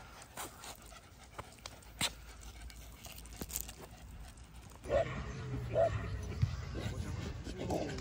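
A Staffordshire bull terrier puppy panting, with scattered light clicks from its claws and harness on a concrete path. About five seconds in this gives way to the open sound of a dog park: distant voices, dogs and a low steady hum.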